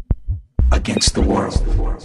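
Tech house music: a steady kick drum and bass beat, with a dense, voice-like sample laid over it from about half a second in.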